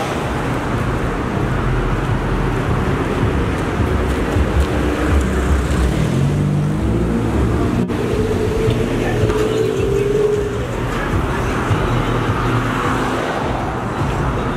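City street traffic noise: motor vehicles running by in a steady low rumble, broken briefly by an edit about eight seconds in, after which a faint held tone sounds for a couple of seconds.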